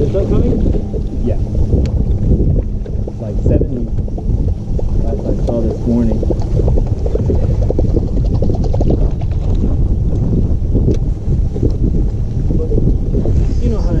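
Wind buffeting the boat-mounted camera's microphone as a steady low rumble, with choppy water slapping against the boat's hull.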